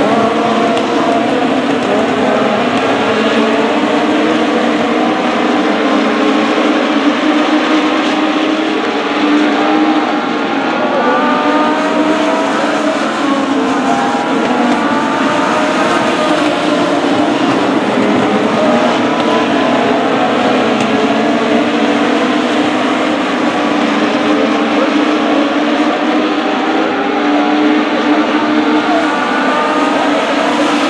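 A pack of Legends race cars, each with a Yamaha motorcycle engine, racing around a dirt oval. Many engines run hard at once, their pitches rising and falling as the cars speed up and slow down.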